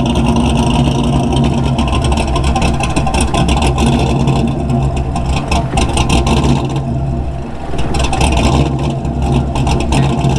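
GM LS V8 swapped into a Honda Accord, running at low revs as the car creeps across grass, then idling. The engine note is steady, with a brief drop in level after about seven seconds.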